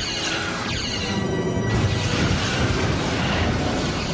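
Sci-fi starship battle sound effects: a starship's weapons firing and explosions, with sweeping glides in the first second and then a dense, continuous blast, over orchestral battle music.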